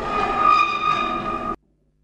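A steady, high horn-like tone with overtones, held at one pitch and cut off suddenly after about a second and a half.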